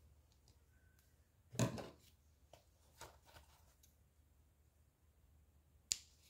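Quiet handling of a sewn ribbon bow while its thread is tied off: one brief louder rustle about a second and a half in, then a few faint clicks. Near the end comes a single sharp snip as scissors cut the thread.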